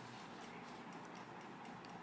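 Faint room tone with a few soft, irregular ticks.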